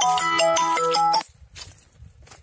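A mobile phone ringtone playing a bright electronic melody of short pitched notes, cutting off suddenly just over a second in.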